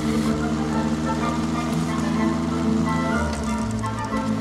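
Film soundtrack: orchestral score with held notes that change about three seconds in, over a motorcycle-and-sidecar engine running.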